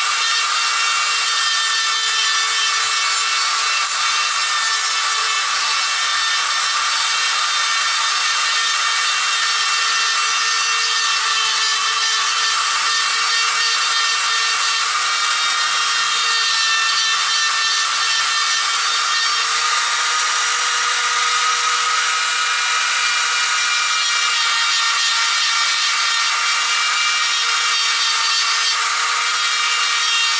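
Handheld electric carving tool running at a steady high whine, its bit grinding and rounding off the chopped top of a ficus trunk.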